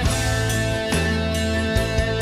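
Live band playing an instrumental passage without singing: sustained piano and keyboard chords over a bass line whose note changes about once a second, with a drum stroke roughly every half second.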